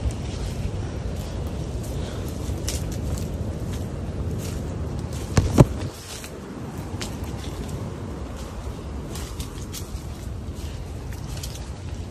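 Wind rumbling on the microphone while walking through brush, with scattered crackles and snaps of footsteps and vegetation, and a single sharp knock about five and a half seconds in.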